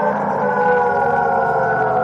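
Background music: a held chord of sustained tones that slowly slides down in pitch, with no beat.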